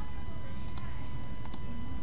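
Computer mouse clicking: two pairs of quick, sharp clicks, the first a little under a second in and the second about a second and a half in. A steady low hum with a thin high tone runs under them.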